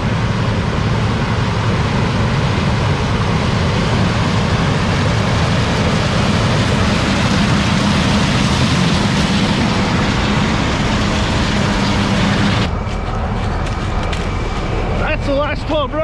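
John Deere combine harvesting standing corn close by, its engine and corn head running as a loud, steady hum with a rush of noise over it. The sound cuts off suddenly about 13 seconds in, and a man's voice follows near the end.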